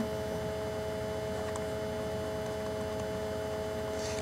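Steady electrical hum in the recording's background: a few even tones held without change over a low buzz.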